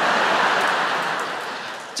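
A large theatre audience laughing together after a punchline, loud at first and slowly dying down.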